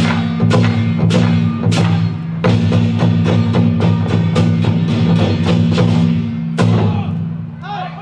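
Lion-dance percussion: large Taiwanese barrel drums struck in a fast, driving rhythm with hand cymbals clashing over a low ringing. It closes on a final strike about six and a half seconds in, which rings out and fades.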